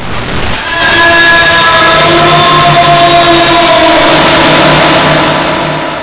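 Loud, harsh rushing noise with a few steady tones running through it. It builds over about the first second, holds, then fades near the end.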